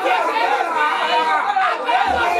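Speech only: a man praying aloud.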